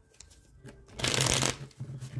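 A deck of cards shuffled by hand: a few soft clicks, then a loud rush of shuffling about a second in, followed by lighter rustling.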